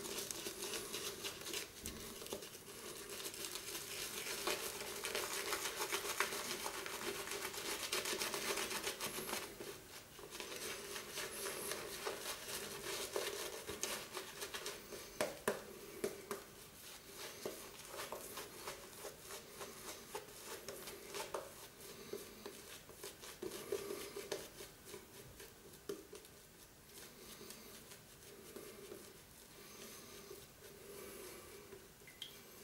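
Shaving brush working Cella shaving-soap lather over the cheeks, chin and neck: a continuous wet, fine crackle and squish of bristles through the foam, louder for the first ten seconds or so and softer after.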